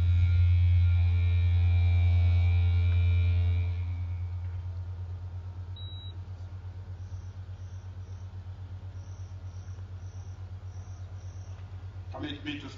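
Loud steady electrical hum from the public-address system, dropping after about three and a half seconds to a quieter pulsing buzz. Faint cricket chirps in short groups come through in the second half.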